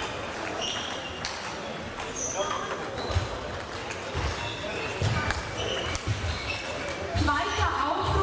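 Table tennis hall between points: scattered clicks of celluloid balls on tables and bats from neighbouring matches, dull thumps of footsteps, short squeaks of shoes on the hall floor and background voices, all echoing in the large hall.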